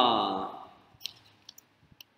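A man's drawn-out hesitant 'uh' that falls in pitch and fades out, followed by a few faint short clicks.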